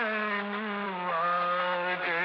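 Music: a long, held melodic line with slow glides between notes, most likely a male singing voice from a song recording.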